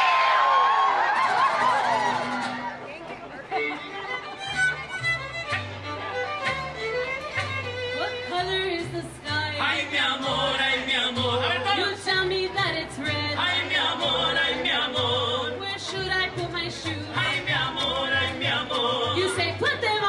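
A crowd cheers and whoops, then a live band starts playing about three and a half seconds in: a steady, repeating bass line under a lead melody and singing.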